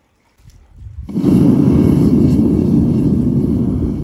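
Gas burner of a small Devil Forge melting furnace running loud and steady, rising over about a second to full roar as flame jets from the lid's vent hole.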